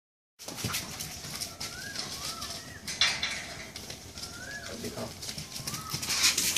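Short bird calls, each rising and then falling in pitch, repeated about four times in two pairs, over a background of scuffing and rustling.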